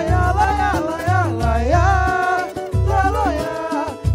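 Live pagode samba band playing: strummed cavaquinho, pandeiro, guitar and bass under a sliding, wordless sung melody.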